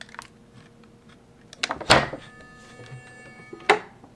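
Electronic Sentry Safe's lock solenoid firing when triggered by a Flipper Zero: a click about two seconds in, then a steady electrical buzz for over a second while it is energized, ending in a sharp clunk as the door unlatches.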